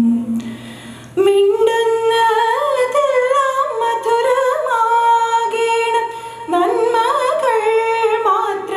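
A woman singing a slow invocation prayer solo into a microphone, holding long notes with ornamented turns. She pauses for breath about a second in and again near six seconds.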